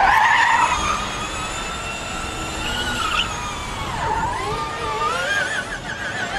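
Formula E race car's tyres squealing as it spins its wheels in a smoky burnout. It is loudest at the start, then a shifting squeal that dips in pitch about four seconds in and turns warbling near the end.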